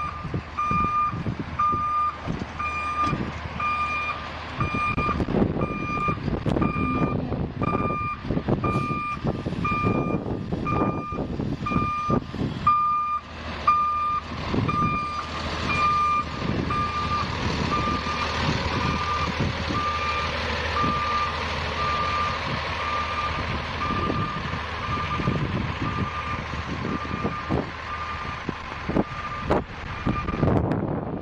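Backup alarm of a Sperry hi-rail rail-inspection truck beeping steadily, about one and a half beeps a second, as the truck reverses along the track. The truck's running noise grows fuller about halfway through as it passes close by.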